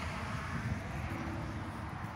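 Steady low rumble of distant road traffic, with a faint steady hum joining about a second in.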